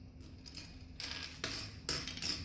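Plastic Lego bricks clicking as they are handled and pressed together, with three short sharp clicks from about a second in to near the end.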